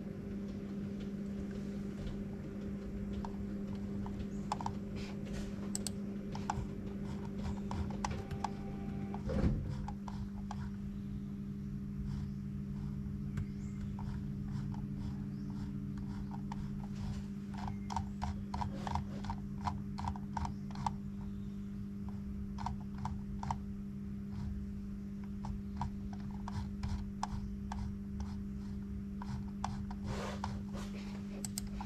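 A steady low hum with scattered light clicks, which come thicker in the second half, and one louder thump about nine seconds in.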